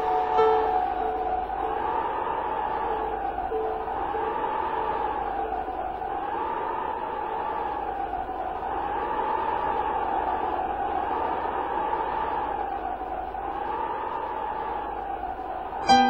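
An electric blower pushing air into a large fabric tube: a steady rushing of air with a whine that wavers up and down, about once every second and a half.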